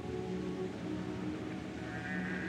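Opera orchestra holding sustained chords in an old 1936 live broadcast recording, with steady background hiss. Near the end a wavering higher tone enters.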